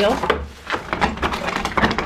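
A wooden barn door being moved: a run of knocks and scrapes of wood on wood, with a low rumble of wind on the microphone.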